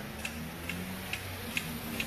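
Regular ticking, a little over two ticks a second, over a low steady hum.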